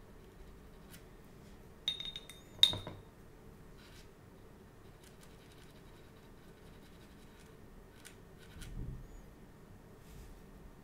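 A paintbrush clinks against a small glass jar, likely the water pot, a few times about two seconds in. The last clink is the loudest and rings briefly. A soft low knock follows near the end.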